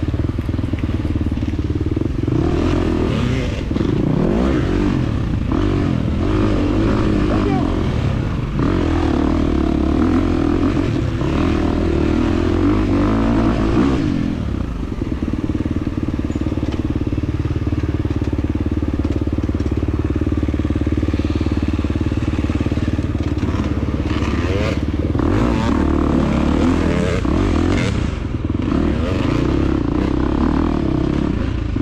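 2023 KTM 350 XC-F's single-cylinder four-stroke engine running hard under constantly changing throttle on tight dirt single track, its pitch rising and falling with the rider's inputs. The engine note drops off briefly a little before halfway, then picks up again.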